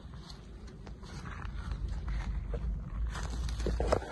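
Rustling of tomato foliage and scattered light crunches of dry straw mulch as the plants are handled and stepped among. The rustling grows busier and louder over the last couple of seconds, over a low steady rumble.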